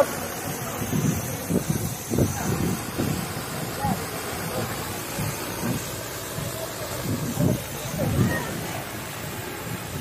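Indistinct voices talking, with irregular gusts of wind rumbling on the microphone.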